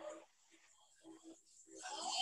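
Near silence, with a few faint, short background sounds that cannot be made out.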